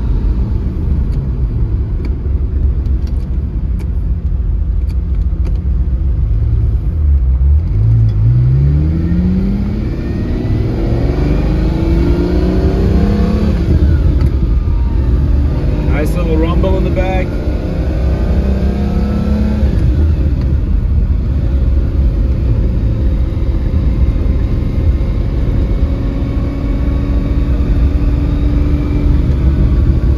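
A 1989 Lamborghini Countach 25th Anniversary's 5.2-litre V12, heard from inside the cabin as the car accelerates. The engine's pitch climbs steadily for several seconds in the first half, with the power coming up evenly. About halfway through the car changes gear, and the engine then runs steadily at cruising speed.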